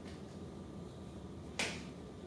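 A single short, sharp click about one and a half seconds in, over a faint steady hum.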